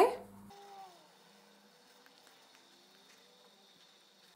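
A woman's voice trailing off at the start, then near silence: faint room tone with a few very faint wavering tones.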